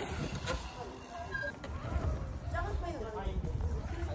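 Indistinct voices talking over a steady low rumble, with a couple of sharp clicks in the first second and a half.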